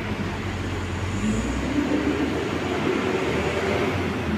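Steady road-traffic noise with a low rumble, a motor vehicle engine rising and falling as it passes about halfway through.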